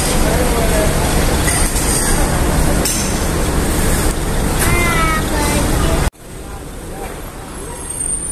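Loud, steady din of coach engines running at a bus terminal, with faint voices over it. About six seconds in it cuts off abruptly to a much quieter stretch of engine noise.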